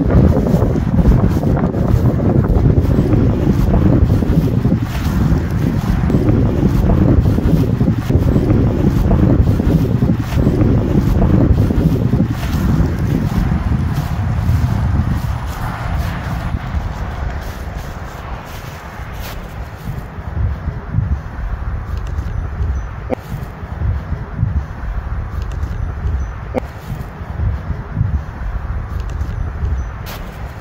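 Wind buffeting the microphone: a loud, rough low rumble in gusts that eases off about halfway through.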